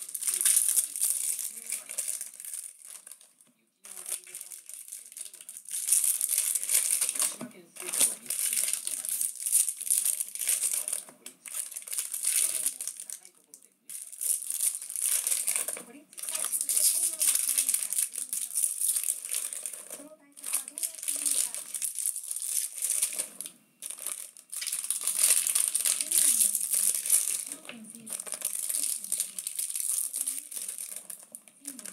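Foil trading-card pack wrappers crinkling as packs are torn open and handled, in long bursts of several seconds separated by short pauses.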